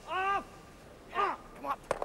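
Granite curling stones striking each other: one sharp clack near the end, as the thrown rock runs back into its own team's stone. Before it comes a short shouted call from a player on the ice.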